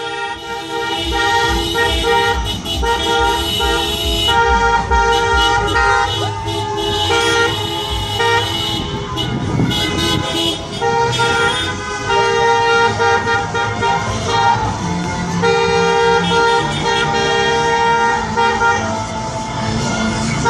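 Several car horns honking at once, long overlapping blasts of different pitches that start and stop at different times, over engine and road noise from the moving cars.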